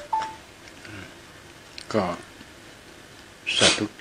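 A man's voice speaking in short, widely spaced phrases, with a brief faint beep just after the start.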